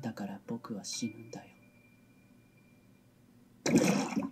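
Anime dialogue spoken in Japanese, then a short quiet stretch with a faint thin high tone. Near the end comes a sudden loud, rushing sound-effect burst from the anime's soundtrack.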